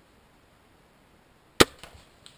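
A crossbow firing about a second and a half in: one sharp, loud snap of the released string, followed by a few fainter clicks.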